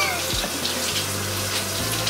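Handheld shower head spraying a steady hiss of water onto a face and hands, the water splashing as she rinses.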